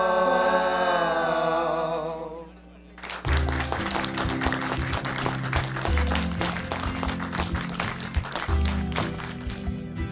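A rock vocalist's held, wavering note slides down in pitch and fades out as the song ends, about two and a half seconds in. After a brief lull, music with a bass line that changes note every couple of seconds starts over a dense, rapid clatter.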